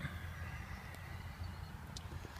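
Quiet background noise: a low steady rumble with a couple of faint clicks.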